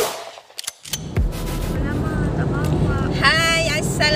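Electronic intro music cuts off, a couple of sharp clicks follow, then the steady low rumble of road noise inside a moving car's cabin, with a woman starting to speak near the end.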